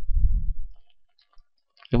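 A low muffled rumble dying away after a word, then a few faint keyboard clicks as characters are typed into a math equation editor.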